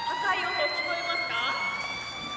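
Orca vocalizing in air: one long, squealing whistle whose pitch slowly rises, with quick chirping sweeps over it.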